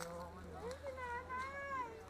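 A cat meowing: one drawn-out meow that rises and then falls in pitch, lasting about a second in the second half.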